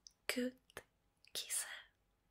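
A woman whispering softly in two short bursts, the first briefly voiced, with a small click between them.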